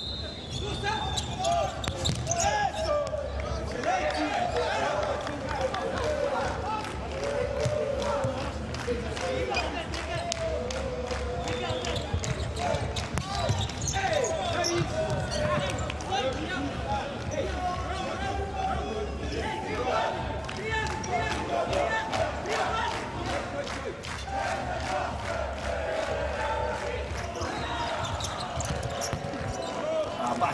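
Futsal ball being kicked and bouncing on an indoor court, with sharp strikes throughout. Players and coaches call out to each other, and the sound carries the echo of a large hall.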